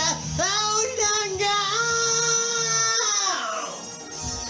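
A man singing a long, high held note over a rock backing track, sliding down and fading out near the end.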